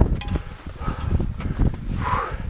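Wind buffeting the microphone as a low, uneven rumble, with footsteps crunching over snow-covered rock.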